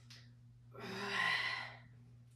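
A woman's heavy, breathy exhale with a trace of voice in it, about a second long, from the effort of holding a dumbbell squat with her arms out in front.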